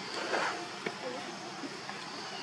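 Forest ambience dominated by a steady, high-pitched insect chorus buzzing on one pitch, with a brief noisy burst near the start and a single sharp click a little under a second in.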